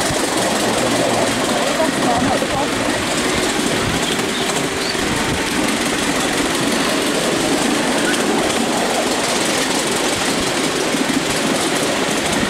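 Steady rush of noise from riding an open car of a miniature railway train as it runs along the track, with wind on the microphone.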